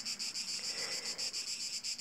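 Insects chirping: a steady, high-pitched pulsing chorus at about eight pulses a second.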